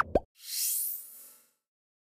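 Sound effects for an animated news end card: a quick pitched bloop right at the start, then a rising whoosh that lasts about a second and fades away.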